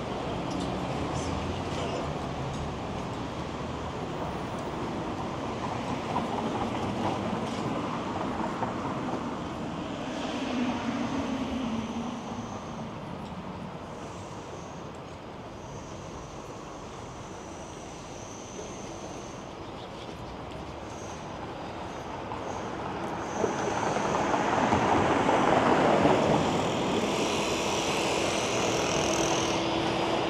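City street traffic: a steady wash of vehicle noise, with a vehicle passing close about two-thirds of the way through.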